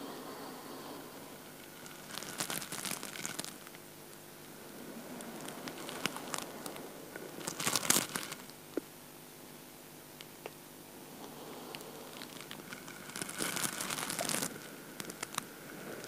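Faint crackly rustling from a seated person slowly rolling his head, in three spells about five seconds apart, over a faint steady room hum.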